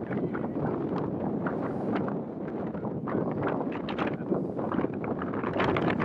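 Horse cantering on turf, its hoofbeats coming through as short irregular knocks over wind buffeting the microphone.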